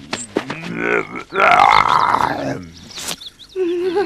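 Cartoon tiger's voice: a few short grunts, then a louder rough growl lasting about a second and a half, followed by a sharp click.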